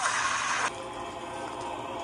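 A loud, noisy cartoon blast sound effect, as a magic beam strikes, cutting off sharply under a second in. It leaves a steady, held chord of eerie background music.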